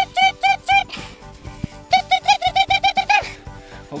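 A man's voice imitating a truck's reversing beeper, rapid "beep-beep-beep" calls in two runs, the second faster, over background music with a steady beat.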